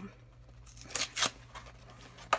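A few brief rustles and scrapes of a cardboard blind box being picked up and handled, over a faint low electrical hum.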